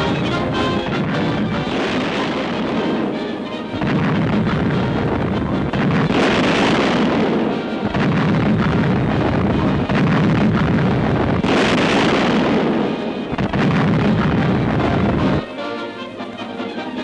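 Battleship's 14-inch main turret guns firing: heavy booms and a rolling rumble that swells again several times, with music underneath.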